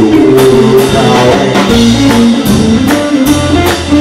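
A live band playing an instrumental passage: electric guitar and electric bass over a drum kit keeping a steady beat, with cymbal and drum hits about twice a second.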